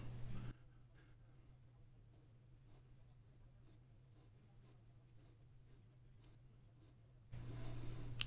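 Near silence, with a string of faint light ticks and scratches from fingers handling a titanium knife handle.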